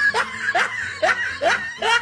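A person laughing in short, evenly repeated bursts, about two or three a second.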